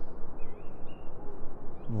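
Steady outdoor ambience with a few faint, wavering bird chirps about half a second in and again toward the end.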